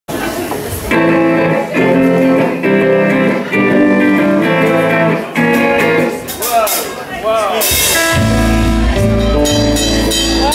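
Live rock band starting a song: a guitar plays repeated chords about once a second, then a few bent notes, and around eight seconds in a cymbal crash brings in the full band with bass and drums.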